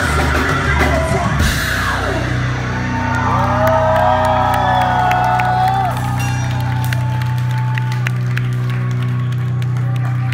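Rock band playing loudly for about two seconds, then the playing stops with a falling glide, leaving a steady low droning note from the stage. Over the drone the club crowd whoops and cheers.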